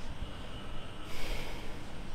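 A man takes one sharp breath in through the nose close to the microphone, about a second in and lasting about half a second, over a low steady background hum.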